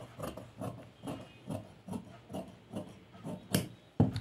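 Large tailoring scissors snipping through net fabric in a steady run of cuts, about two and a half a second, with a sharper click near the end.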